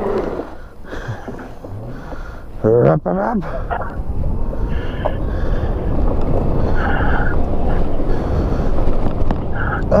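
Wind rushing over the microphone of a moving electric pit bike, growing louder from about four seconds in as the bike speeds up on a slushy road. A short voice breaks in around three seconds.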